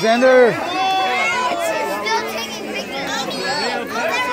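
Several people talking over one another, children's voices among them, with one loud, drawn-out call right at the start.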